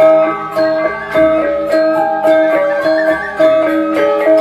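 Balinese gamelan dance music: bronze metallophones play a steady melody of quick, struck, ringing notes.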